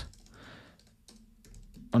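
Faint typing on a computer keyboard, a few soft keystrokes.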